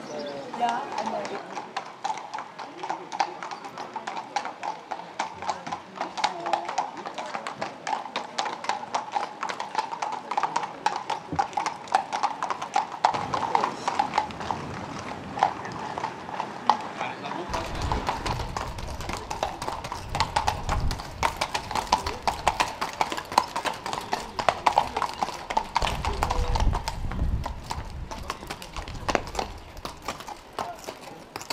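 Horses' hooves clip-clopping at a walk on a paved village street, a steady run of hoof strikes throughout, with people talking in the background.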